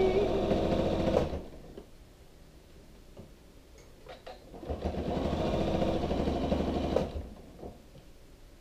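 Janome sewing machine running and stitching through a quilted placemat in two runs. The first run stops about a second in, and the second runs from a little past halfway to near the end, with a quiet pause between them.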